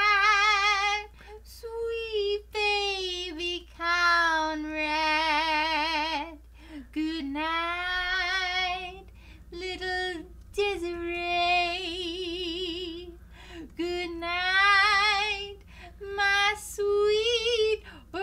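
A voice singing a slow lullaby in a high, warbling old-woman character voice. The held notes carry a wide, wobbling vibrato, and the phrases last a second or two with short breaths between them.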